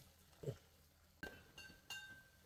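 Very faint kitchen sounds: a soft knock, then a light metallic clink a little after one second that rings on as a single clear tone for about a second, like a utensil touching the steel pot.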